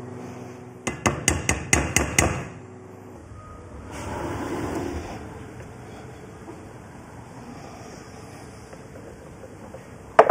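Kitchen clatter: a quick run of about eight sharp knocks and clinks of hard kitchenware over about a second and a half, over a steady low hum that stops soon after.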